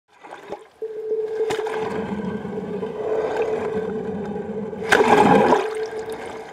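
Sea water sloshing and splashing, with a steady humming tone running under it, and a louder surge of water about five seconds in.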